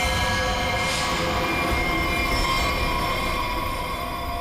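Dramatic background score for a scene change: a deep rumbling drone under a layer of sustained tones, with a brief whoosh about a second in.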